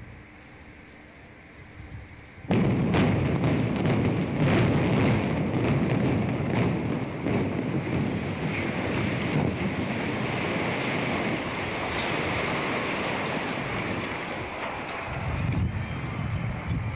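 Building implosion of the 17-storey, 1930 Allis Hotel. After a faint wind hiss on the microphone, about two and a half seconds in the sound jumps to a quick series of sharp cracks from the demolition charges. These give way to a long, deep rumble of the tower collapsing, which runs on steadily.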